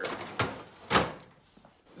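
Steel drawers of a Craftsman tool chest being closed and pulled open, giving two knocks about half a second apart. The second knock is louder and rings briefly.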